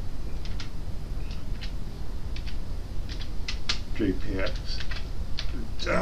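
Typing on a computer keyboard: irregular short key clicks, a few at a time.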